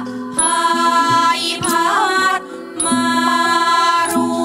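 Thai classical singing by a chorus of women, drawn-out ornamented notes that bend and waver, over a Thai traditional ensemble. Small hand cymbals strike the beat about every second and a quarter, some strokes left ringing.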